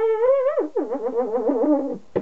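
A young man singing wordlessly in a high falsetto: a held note that slides upward about half a second in, then a run of wavering, lower notes.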